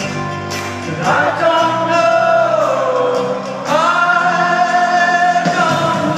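Live band music in an arena, recorded from the crowd: a voice holds two long notes over the band, the first sliding downward about a second in, the second starting near the middle.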